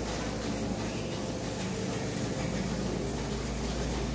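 Steady background hum and hiss of a supermarket interior, with a low hum and a few faint steady tones.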